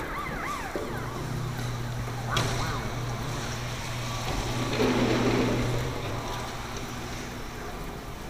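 Arcade game-machine noise: rising-and-falling electronic tones at the start, then a steady low electric hum that stops about six seconds in.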